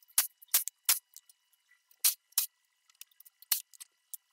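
About a dozen sharp, scattered metallic clicks and clinks of tools and hardware being handled while bracket nuts are taken off a truck's front end, with near silence between them. No impact gun is heard running.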